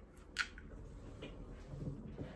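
A single light click about half a second in, then faint handling noise as a freshly opened aluminium beer can is moved about on a desk.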